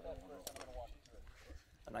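Faint speech: a voice in the first second, then a short lull before a man starts talking near the end.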